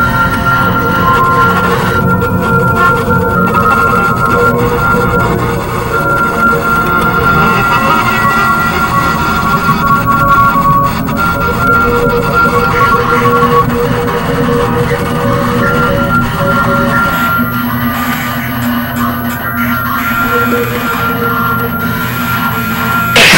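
A quieter passage of harsh noise music: layered held tones that shift in pitch every second or two, over a dense, noisy low end.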